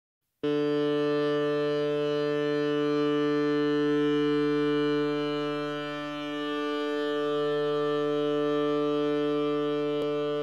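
A steady, loud droning tone held at one pitch, with a brief dip about six seconds in.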